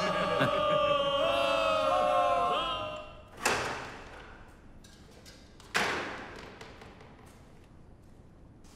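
Men's voices calling out in a drawn-out, wavering cheer that fades after about three seconds. Then come two heavy, echoing thuds like a door or gate being shut, about two and a half seconds apart.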